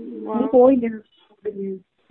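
Speech: a person's voice talking in short phrases, thin and cut off in the highs as over a telephone line.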